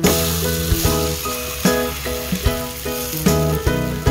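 Scallion pancake batter sizzling in hot oil in a frying pan as the pancake is flipped onto its uncooked side, loud at first and then easing off. Background music with plucked notes plays throughout.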